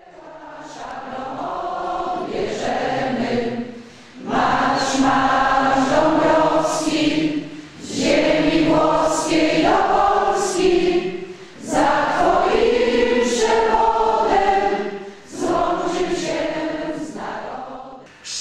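A hall full of people, mostly older women, singing together as a group, in phrases of about four seconds with short breaks for breath between them; the singing fades in over the first two seconds.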